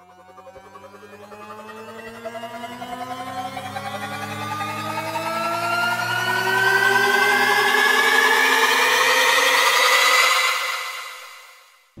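Cinematic riser sound effect, the Delicata library's "Atomic Monster": a stack of tones gliding steadily upward over a low drone, swelling with a fast pulsing to its loudest about six seconds in, then fading out quickly near the end.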